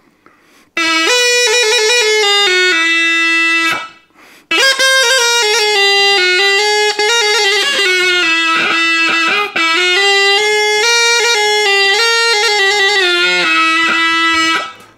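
Zhaleika, a Russian shepherd's single-reed hornpipe with a horn bell, playing a folk melody in two phrases with a short breath break about four seconds in. The tune keeps returning to the same low note.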